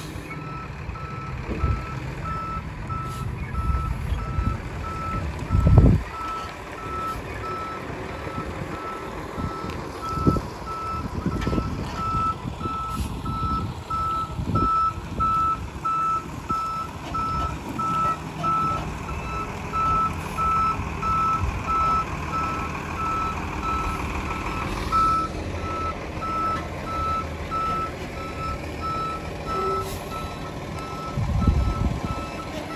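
Truck reversing alarm beeping about twice a second as a tractor-trailer backs up, with the truck's engine running low underneath. Occasional low thumps, the loudest about six seconds in.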